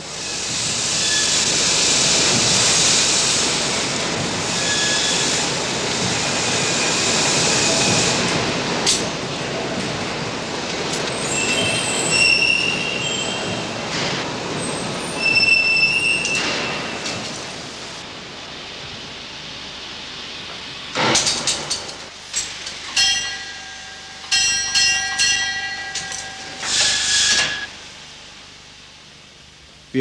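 Colliery steam winding engine running through a hoist: a loud rushing noise with occasional high squeals, easing off after about 18 seconds. In the last third comes a run of short, shrill signal tones from the shaft signalling system.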